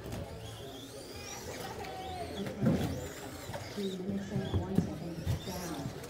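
Electric RC short-course trucks racing, their motors whining up and down in pitch, with several sharp knocks of the trucks hitting the track or each other, the loudest near the middle; voices murmur in the background.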